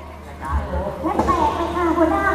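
A performer's voice through the stage PA speakers, picking up about half a second in after a brief lull, over a steady low hum.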